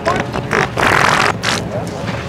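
A wet fart sound: one noisy burst of about a second, from near the start to past the middle, louder than the chatter of people around it.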